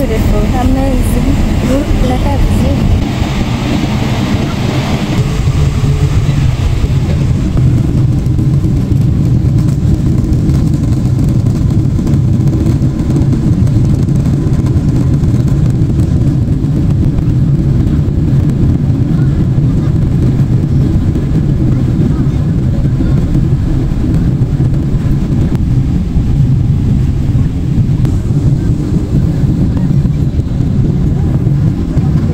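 Jet airliner's engines at takeoff power, heard from inside the cabin: a loud, steady deep roar through the takeoff roll and climb-out, with extra hiss in the first several seconds.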